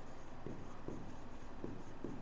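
Handwriting on a green classroom board: a few faint, short strokes as a word is written out.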